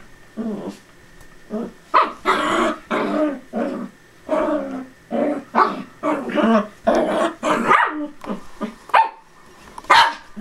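Small dogs at play, barking and growling in a quick, irregular run of short loud bursts.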